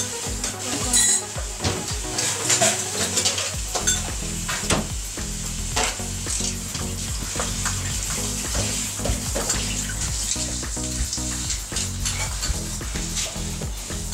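Food sizzling as it fries in a pan, with scattered clinks of dishes and utensils.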